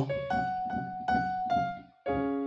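Piano playing a short harmonized phrase: several notes and chords struck one after another under a held top melody note F. The sound dies away to silence just before the end.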